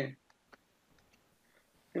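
Several faint, sparse clicks from a computer mouse while the drawing canvas is scrolled and the pointer moved.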